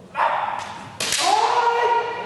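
Kendo fighters shouting kiai: a rough shout, then about a second in the sharp crack of a bamboo shinai striking, followed at once by a long shout that rises and then holds steady.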